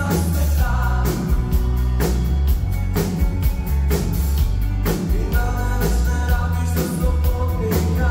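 Live rock band playing a song: lead vocals over acoustic and electric guitars and a drum kit, with strong drum hits about once a second and a heavy low end, recorded in a concert hall.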